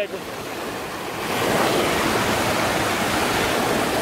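Steady rush of water from a small waterfall, even and unbroken, getting louder about a second in.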